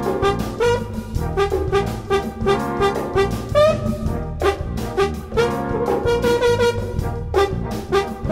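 Military brass-and-drum band (batterie-fanfare) playing a jazz-blues piece: short, punchy repeated brass figures over a low bass line and drums.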